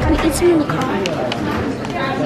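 Indistinct voices of people talking, with a few short clicks and rustles.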